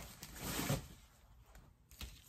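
A brief shuffling of objects being moved about on a desk to clear space, lasting about half a second.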